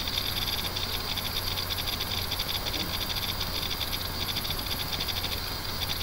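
Steady background noise: a low mains-type hum and hiss, with a fast, faint high-pitched ticking that runs without a break.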